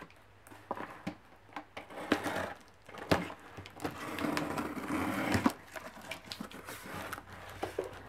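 A cardboard box being cut and torn open: a utility knife slitting the packing tape and plastic wrap, then the wrap and tape tearing and the cardboard flaps pulled back. Scattered clicks and scrapes, with a longer tearing rustle about four seconds in.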